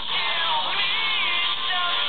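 Background music: a song with a melody line that slides up and down in pitch over steady instrumental backing.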